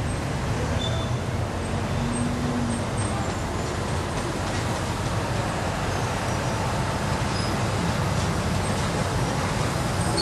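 Steady vehicle and traffic noise as a Las Vegas Monorail train approaches along its elevated guideway, growing a little louder near the end as the train draws close.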